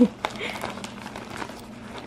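Plastic diaper package crinkling and rustling as a hand pulls a diaper out of it, with a couple of light clicks.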